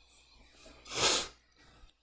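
A single breath of air close to the microphone, about a second in, lasting about half a second.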